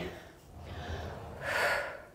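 A woman breathing audibly during exertion: two breaths without voice, a soft one about half a second in and a louder one near the end.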